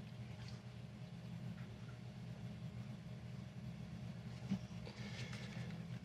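A faint, steady low hum, with a small click about four and a half seconds in and light handling rustle near the end.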